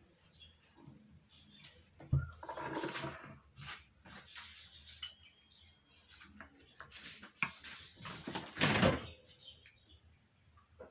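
Kitchen handling noises: a few knocks and rustles from a glass bowl of dough and a silicone pastry brush in a small glass dish of egg yolk, the loudest about nine seconds in.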